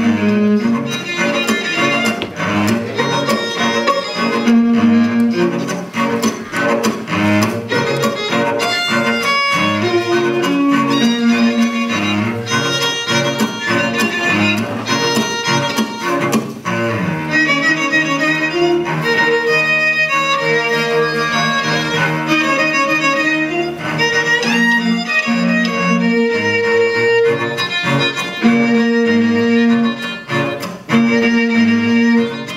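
String quartet of two violins, viola and cello playing live, with closely spaced short, rhythmic strokes. About seventeen seconds in the low end drops away and held notes take over for several seconds, before the fuller, rhythmic texture returns.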